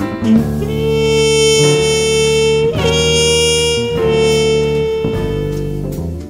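Jazz trumpet holding long sustained notes, broken for a moment near the middle, with the band sustaining underneath.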